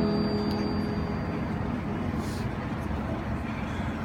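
A held electric keyboard chord dies away in the first moment or two, leaving a steady hum of city street noise with no music playing.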